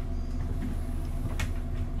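Steady low machinery hum inside an elevator car standing at a floor with its doors open, with one sharp click about one and a half seconds in.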